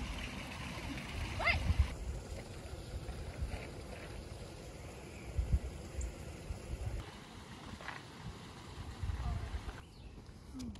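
Wind buffeting the phone's microphone in uneven low rumbles over a steady outdoor hiss, with a brief rising call about a second and a half in.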